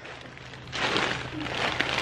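Rustling and crackling of a cloth bag full of wrapped candy being picked up and handled. It starts a little under a second in, with a few sharp crinkles.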